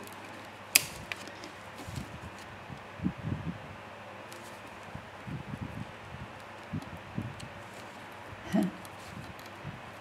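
Steady background noise of an electric room fan, with a sharp click about a second in and several soft taps and knocks as fingers press small self-adhesive half pearls onto a paper page on a table.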